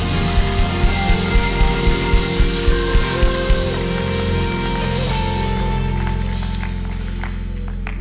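Church worship music: soft sustained keyboard chords with a steady low beat in the first half, under congregational applause. The applause and beat fade out over the last few seconds, leaving the held chords.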